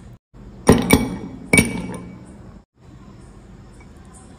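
Ice cubes dropped into a tall empty drinking glass: three sharp clinks within about a second, each ringing briefly.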